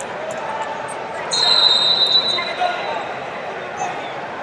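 A long, high whistle blast starts about a second in and lasts about two seconds, over a steady babble of voices that echoes in a large wrestling hall.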